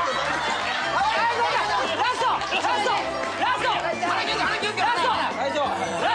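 Excited chatter from several people talking over each other, with background music playing underneath.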